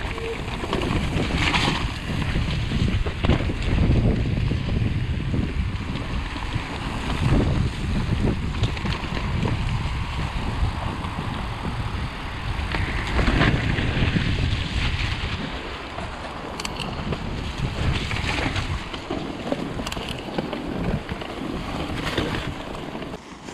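Mountain bike riding down a leaf-covered dirt trail: wind buffeting the camera microphone over the uneven rumble of the tyres on the ground and the rattle of the bike.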